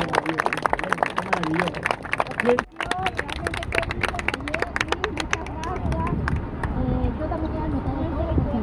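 A group of people clapping, with many voices talking and calling out over one another. The clapping thins out and stops about three-quarters of the way through, leaving chatter over a low rumble.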